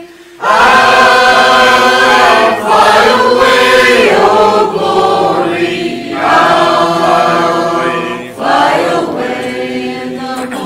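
Mixed choir of men's and women's voices singing a hymn together, in sustained phrases with brief breaks between them.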